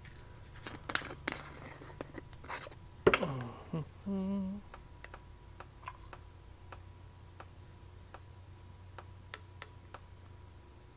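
Light clicks and knocks of small plastic and metal parts handled on a workbench while an HVLP spray gun's cup is filled from a graduated cylinder. A louder clatter about three seconds in trails off in a falling ring, followed by a short low hum, then only sparse light ticks.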